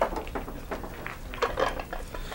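Billiard balls and cue clicking in a pool hall: several sharp, hard clicks, the loudest right at the start, over faint background noise of the hall.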